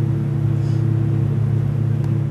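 Steady low drone of a flight simulator's single-engine Cessna engine sound, holding an even pitch.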